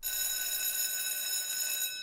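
A bright, bell-like ringing tone starts abruptly, holds steady for about two seconds, then fades.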